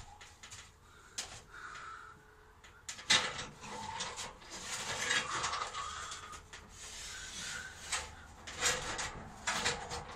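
An aluminium ladder scraping, rubbing and knocking against the dome's wooden struts as it is shifted, with a sharp knock about three seconds in and scraping clatter after it.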